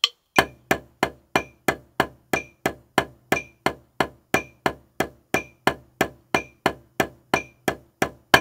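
Snare drum played with two sticks in an even single paradiddle sticking (right, left, right, right, left, right, left, left) laid over triplets at tempo 60, with no accents: about three evenly spaced strokes a second.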